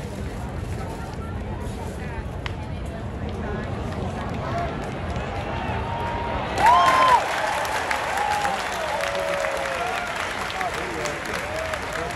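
Baseball stadium crowd chatter, with scattered voices over a steady hubbub. About six and a half seconds in, a loud wavering shout rises above it and the crowd cheers and claps, reacting to the play on the field.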